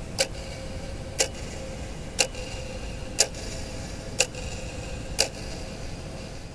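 Clock ticking once a second, six sharp ticks each with a brief ring, over a steady low rumble.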